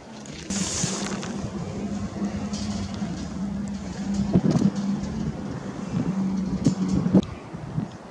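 A steady low hum, like an engine running, starting about half a second in with a short hiss and stopping suddenly near the end, with a few short knocks in the second half.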